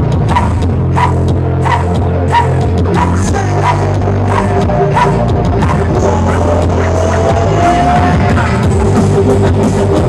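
Live band playing amplified music, with drums keeping a steady beat of about two hits a second under a deep bass guitar line.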